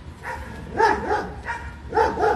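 A kitten meowing: several short, high calls, each rising and falling in pitch, starting about a second in.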